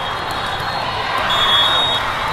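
Busy indoor tournament-hall hubbub of many voices and play from the courts, with a short shrill referee's whistle blast in the last half second or so.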